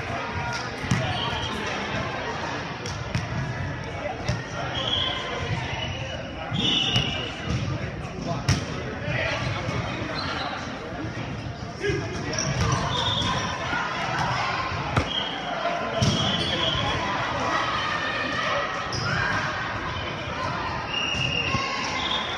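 Indoor volleyball rally on a hardwood gym court: sharp smacks of hands striking the ball several times, short high sneaker squeaks, and players calling out, all echoing in the large hall.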